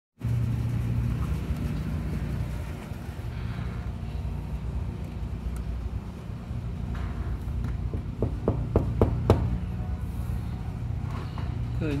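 A steady low background rumble, with a quick run of about five sharp taps or clicks about eight to nine seconds in.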